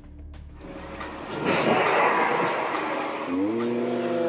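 Road noise from cars on a wet road, swelling into a loud tyre hiss around the middle. Near the end a steady pitched tone comes in and holds.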